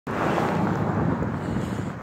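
Wind buffeting a phone's microphone outdoors, a steady low rumbling noise without any clear tone, easing slightly near the end.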